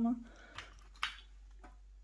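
A few faint clicks and light rustles of hands moving over a crocheted lace square on a wooden tabletop, after one short spoken word.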